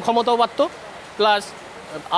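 Only speech: a man talking in Bengali, in two short phrases with brief pauses between them.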